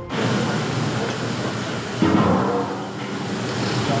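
Steam hissing steadily out of a stainless-steel commercial food steamer cabinet used to steam eel, swelling louder about two seconds in.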